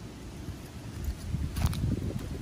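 Low rumble of wind on the microphone, growing stronger late on, with one brief short noise about one and a half seconds in.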